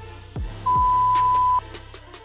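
One long electronic timer beep, about a second long, ending a countdown of shorter beeps and marking the end of an exercise interval. Background electronic music with a deep bass beat plays under it.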